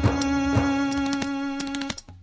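Instrumental passage on a Roland electronic keyboard: one long sustained note, rich in overtones, held over a light percussion beat with a few evenly spaced strikes. The note cuts off just before the end.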